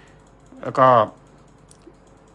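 A man says a short phrase in Thai, and a few faint laptop keyboard clicks follow in the quiet after it.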